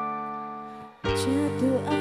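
Live dangdut koplo band: a held electric keyboard chord fades away, then about a second in the whole band comes in together on a loud hit. Bass and a wavering melody line follow.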